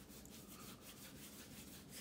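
Faint, irregular rustling of a paper tissue being handled and rubbed.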